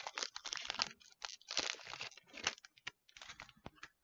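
Faint crinkling and tearing of a foil Pokémon booster pack wrapper being opened by hand: an irregular run of short, sharp crackles.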